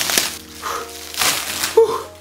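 Plastic wrapping crinkling and tearing as it is pulled off a cardboard box, in two noisy bursts, one at the start and one past the middle, over background music.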